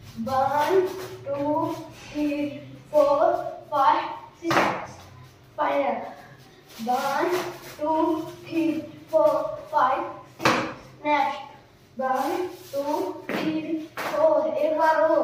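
A young voice speaking in short rising and falling phrases that the recogniser could not make out, with two sharp smacks partway through.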